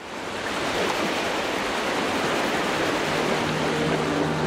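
Sea waves washing, a steady rush of water that starts suddenly. A low held musical note joins about three seconds in.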